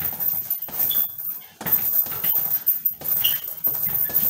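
Gloved punches landing on a hanging heavy punching bag in a quick, irregular run of thuds, with a couple of short high squeaks among them.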